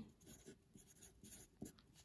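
Pencil writing on paper: faint, short scratches.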